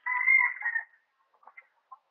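A chicken calling once near the start, a single pitched call just under a second long, followed by faint scattered clicks.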